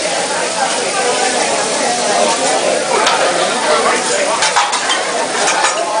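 Vegetables and fried rice sizzling on a hot teppanyaki griddle, with a metal spatula scraping and clicking against the steel plate as the food is stirred.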